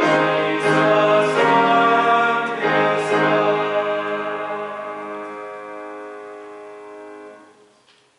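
A hymn sung with piano, ending on a long final chord that fades out near the end.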